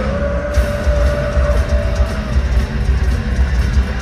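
Heavy metal band playing live in an arena, heard from the crowd: distorted electric guitars, bass and pounding drums, with one note held for about two seconds before it drops out.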